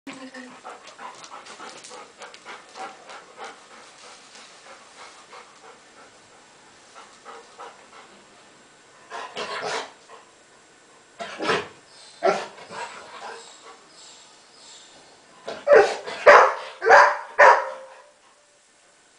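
Golden retriever panting, then barking: a few single barks in the middle and a quick run of louder barks near the end.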